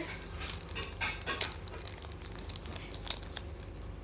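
Plastic candy-bar wrapper of a Twix being handled and torn open, crinkling in short, irregular crackles, the sharpest about one and a half seconds in.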